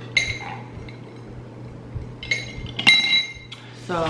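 A straw knocking against a drinking glass: three bright ringing clinks, the last, about three seconds in, the loudest.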